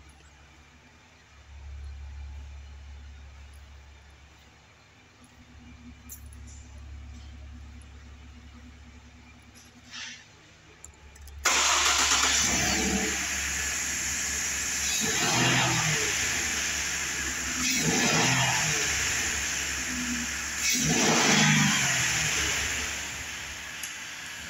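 Ford F-150's 3.7-litre V6 engine starting suddenly about halfway through, then running and being revved about four times, a few seconds apart.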